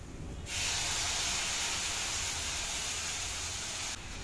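Loud sizzling from a hot frying pan of stir-fry vegetables on a gas burner, starting suddenly about half a second in as liquid is ladled into the pan. It holds steady and cuts off just before the end.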